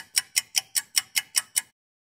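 Fast, even clock-like ticking, about five ticks a second, cutting off abruptly near the end.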